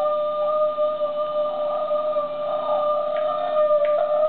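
A man's voice holding one long, steady, wordless high note.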